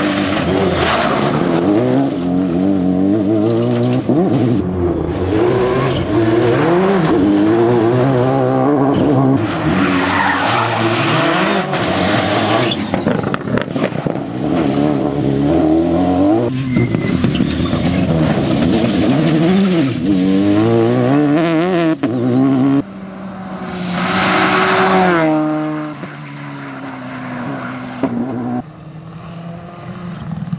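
Citroën DS3 rally car driven flat out on a gravel stage: the engine revs climb and drop again and again as it shifts, brakes and accelerates through corners, with loose gravel hissing under the tyres. Near the end the car is heard more faintly, with one more rise in revs as it passes.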